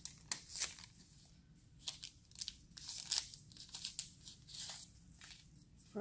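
Paper wrapper of a sterile cotton-tipped swab being torn and peeled open by gloved hands, an irregular run of crinkling rustles.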